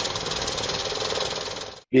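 Banknote counting machine riffling through a stack of paper banknotes: a fast, even whirring rattle that cuts off abruptly near the end.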